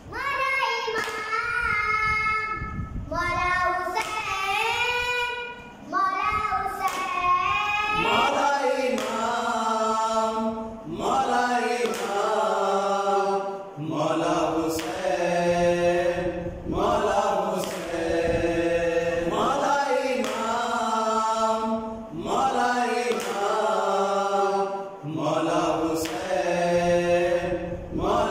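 A boy singing a noha, a Shia lament for Muharram, in long melodic phrases with short breaths between them.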